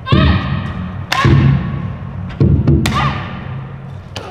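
Martial artist's sharp shouts (kiai) with wooden boards cracking under her strikes, three times: at the start, about a second in and near three seconds, over background music with a drum beat.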